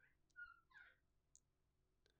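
Near silence: quiet room tone with a few faint clicks and a brief, faint high chirp-like sound about half a second in.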